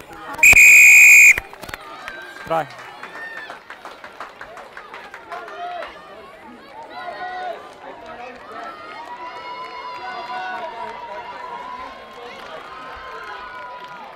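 Referee's pea whistle blown once, a loud blast of about a second, awarding a try. Spectators' voices and shouts follow.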